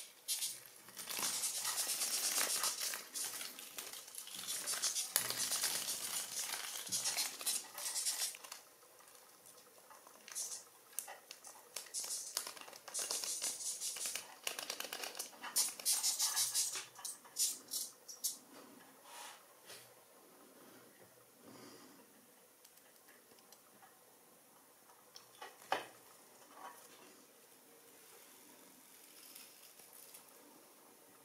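Death's head hawkmoth squeaking in long runs of rapid, raspy pulses, heaviest through the first half, while it struggles in the hand. The second half is quieter, with only scattered faint clicks.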